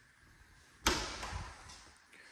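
A door shutting: a sudden sharp knock about a second in, trailing off in a short rush of noise.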